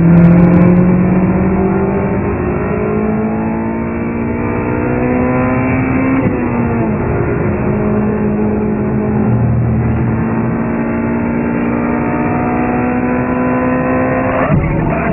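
Honda Civic Type R FD2's 2.0-litre DOHC i-VTEC four-cylinder engine pulling hard at high revs, its pitch climbing steadily. About six seconds in the pitch dips at an upshift, then climbs again.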